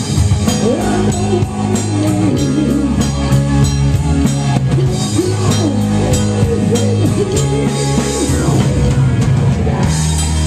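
Live rock band playing: drum kit and electric guitars in a steady, loud groove.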